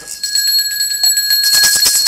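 Brass hand bell ringing continuously with a steady high tone, together with quick, even shaking of a hand rattle.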